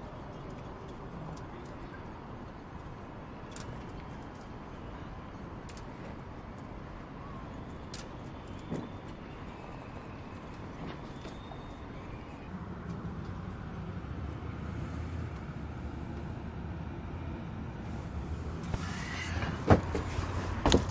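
Steady outdoor background noise, with a low rumble that grows louder about two-thirds of the way in. A few faint clicks and knocks come through, and a louder knock or two near the end.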